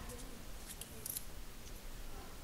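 A few faint, crisp clicks and light rustles of small objects being handled by hand, over a low steady hum.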